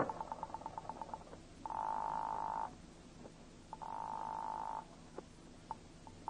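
Telephone sound effect: a rotary dial clicking rapidly for about the first second, then the ringing tone heard in the earpiece twice, each ring about a second long with a pause between.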